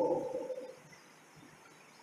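A man's drawn-out spoken word trailing off and fading out in the first half-second or so, then quiet room tone.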